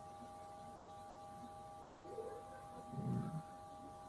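Faint background noise of an online video call: a low hiss with a few thin steady tones throughout, and a faint brief low sound about three seconds in.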